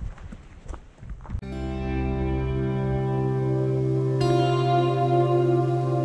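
Ambient background music with long held chords, coming in about a second and a half in; a brighter, higher layer joins at about four seconds.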